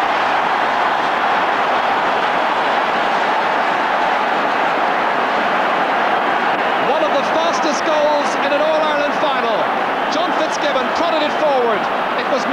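Large stadium crowd roaring and cheering a goal, a continuous loud roar; from about seven seconds in, individual shouts and voices stand out above it.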